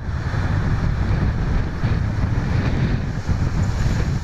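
Strong wind buffeting the microphone over rough sea breaking along a seawall: a steady rushing noise with a heavy low rumble.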